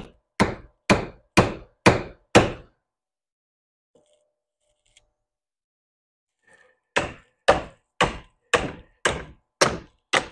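Hammer blows on a bent 28-inch steel chainsaw bar clamped in a bench vise, struck to straighten it. A run of six strikes about two a second, each ringing briefly, then a pause of about four seconds, then six more at the same pace.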